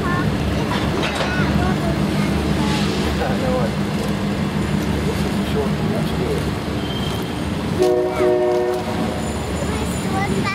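Freight train of open-top hopper cars rolling past close by, a steady rumble of wheels on rail. Near the end a train horn sounds a chord for about a second.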